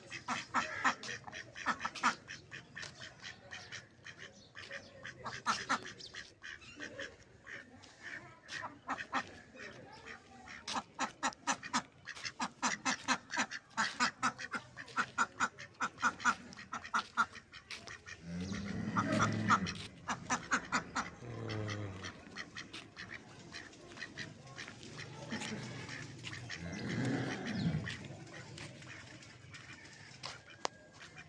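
A pair of domestic ducks quacking in rapid runs of short, harsh calls. Twice, about two-thirds of the way in and again near the end, a longer, lower pitched call rises and falls under the quacks.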